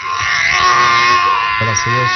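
A woman's long, high-pitched scream held on nearly one pitch. A man's voice breaks in near the end.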